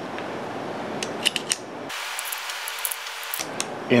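A few small metallic clicks as .380 ACP cartridges are pressed into the Ruger LCP's single-stack magazine, over a steady hiss.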